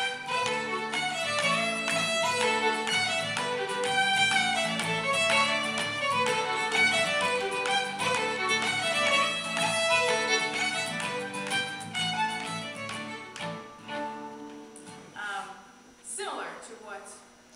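Traditional fiddle tune played on violin, quick running notes over acoustic guitar strumming the chords. The tune winds down and ends about three seconds before the end, leaving a few last scattered strokes.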